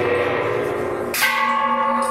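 Hand-held gong of a temple procession percussion band, its ring dying away, then struck again about a second in and ringing on with several steady overtones.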